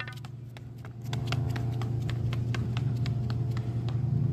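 Quick footsteps running up concrete steps: a run of light taps, about four or five a second, over a steady low rumble that grows louder about a second in.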